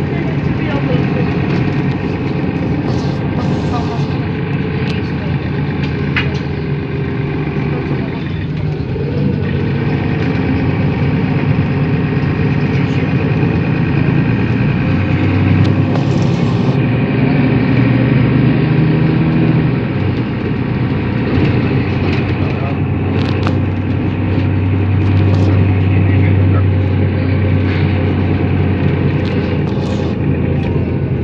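Mercedes-Benz Citaro II city bus heard from inside the cabin while it drives: engine running under road and cabin noise, its note changing pitch several times as the bus's speed changes.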